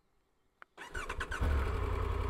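A motorcycle engine being started: after a near-silent gap and a single click, a short crank catches about three-quarters of the way in and the engine settles into a steady idle.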